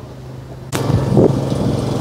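A low steady hum, then, about three-quarters of a second in, a sudden loud rush of wind noise on the microphone while riding a Segway, with a brief low thump soon after.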